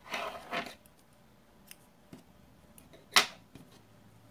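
Scissors snipping through acrylic crochet yarn: one sharp snip about three seconds in, after a short rustle at the start and a few faint handling ticks.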